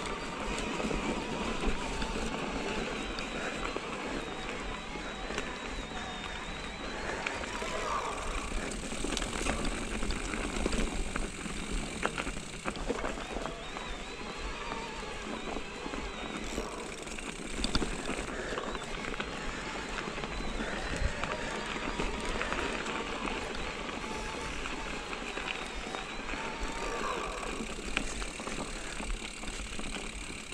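Mountain bike rolling along a dirt and snow singletrack: steady tyre noise with frequent small clicks and knocks from the bike rattling over rocks and roots.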